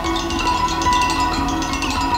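Live experimental ensemble music: a violin bowing held notes over a run of quick, ringing percussion strikes.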